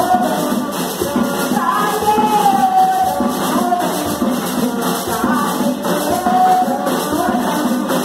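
Voices singing a drawn-out religious chant over a steady beat of hand-shaken rattles, about four strokes a second.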